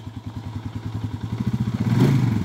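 ATV (four-wheeler) engine running under load as it pulls on a rope tied to a buried telephone post, its fast, even beat growing louder and a little higher toward the end as it is revved up.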